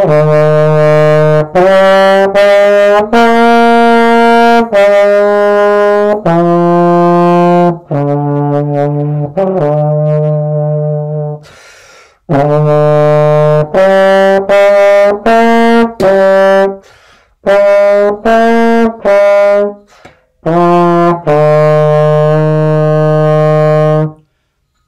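Slide trombone playing a simple method-book exercise line: a string of separately tongued, held low notes in three phrases with short breaths between, ending on a longer held note.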